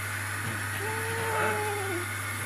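A dog whining once: a single high-pitched whine of about a second that dips at the end. A steady low hum runs underneath.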